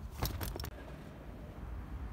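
A few quick clicks and rattles in the first half-second, as things are handled in an open car boot, then a quieter low rumble underneath.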